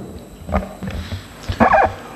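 A man's brief low vocal sound picked up by a table microphone, near the end, after a couple of soft knocks.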